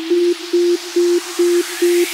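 Psytrance build-up: a single synth note pulsing about twice a second over a rising noise sweep, with no kick drum or bass yet.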